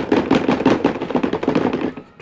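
Stuffed toys being pounded against each other and the surface beneath by hand, a rapid run of thumps and taps about six a second.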